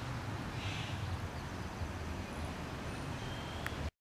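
Steady low outdoor rumble under a faint hiss, with a faint, short high tone near the end. The sound cuts out abruptly just before the end.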